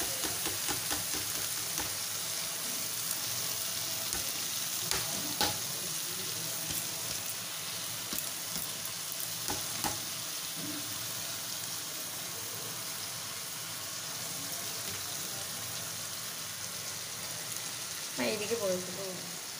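Soaked, drained Gobindobhog rice sizzling in hot oil and whole spices in a kadai as it is poured in and stirred, a steady hiss with a few light knocks of the metal ladle against the pan.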